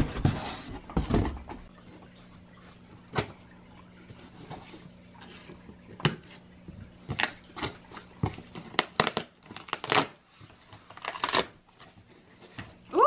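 Scissors cutting through packing tape on a cardboard box, with the box being handled. Scattered sharp snips, clicks and scrapes follow a rustling start, over a faint steady low hum.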